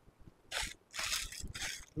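A brief rustle, then about a second of rustling and scuffing, as a man gets up from a woven charpai cot and starts walking across a tiled floor.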